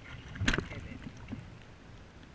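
A sharp splash at the kayak's side about half a second in as a fish is let go from a lip grip, followed by fainter water sounds and small knocks that die away.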